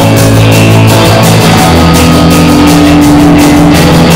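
Loud rock music: electric guitar chords held over a steady drum beat.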